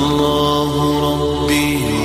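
Vocal nasheed theme: voices hold a long sung note over a low steady drone, and the note moves down near the end.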